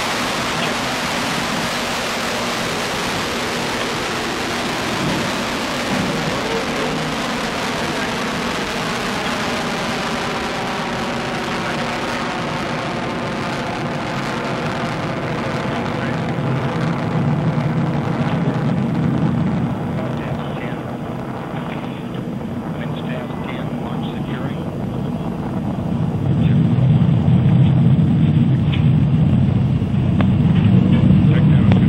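Atlas IIAS rocket climbing after liftoff, its liquid-fuelled main engines and two ground-lit solid boosters firing: a loud, steady, noisy rumble. About two-thirds of the way through it loses its highs and grows deeper as the rocket climbs away.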